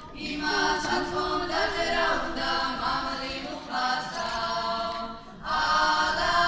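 A choir of girls singing a song in short phrases with brief breaks between them.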